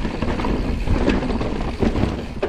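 Forbidden Dreadnought full-suspension mountain bike rolling down a rough dirt trail: a steady rumble of tyres on dirt, with the bike rattling and a few sharp knocks over bumps.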